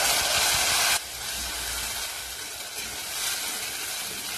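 Wet ground onion-tomato paste poured into hot oil, sizzling loudly. About a second in the sizzle drops suddenly to a steadier, quieter frying hiss as the paste settles in the pan.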